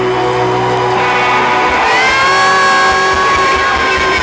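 Live band playing, with an electric guitar holding long sustained notes and bending one up in pitch about two seconds in.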